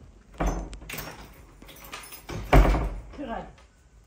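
A wooden door slamming shut, a heavy thud about two and a half seconds in and the loudest sound, after a lighter thump about half a second in.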